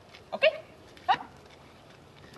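Mini goldendoodle giving two short, high yips about two-thirds of a second apart, the second rising in pitch.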